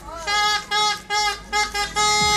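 A horn sounding in about four short blasts at a steady pitch, then a longer held blast.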